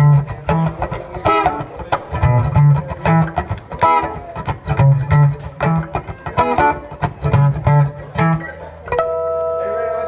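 Acoustic guitar played live through PA speakers: picked notes over regularly repeating low bass notes, with a held note ringing for about a second near the end.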